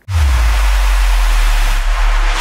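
Whoosh transition sound effect: a loud rush of noise over a deep bass rumble that starts abruptly and holds steady, brightening just before it stops.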